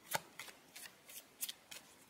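Tarot cards being handled, giving a handful of short, faint snaps and flicks at uneven intervals.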